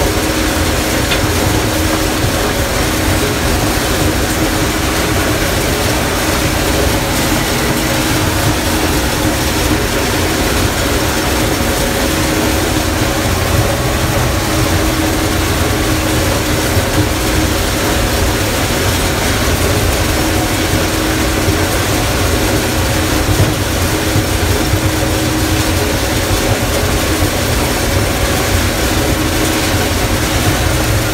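Gleaner combine running under load while harvesting corn, heard from inside the cab: a steady mechanical din with a constant hum underneath, unchanging throughout.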